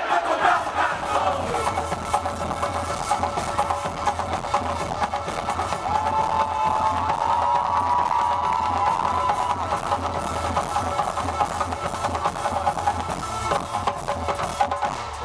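Band music driven by heavy drum percussion, bass drums and hand drums beating a steady rhythm. A wavering melody line comes in about six seconds in and drops out after about three seconds.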